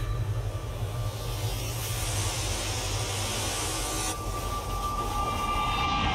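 Sound design from an immersive dome projection show: a steady low rumble under a rushing hiss, joined about four seconds in by a held high tone.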